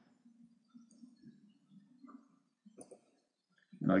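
Near silence with a faint low hum and a few faint, short computer mouse clicks, one a little stronger about three seconds in; a man's voice starts right at the end.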